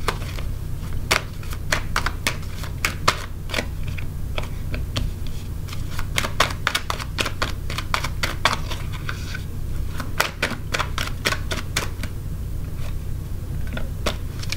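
A deck of tarot cards being shuffled by hand and cards laid down on a cloth-covered table: a long run of quick, irregular card clicks and flicks, thickening into denser flurries around the middle and again about ten seconds in.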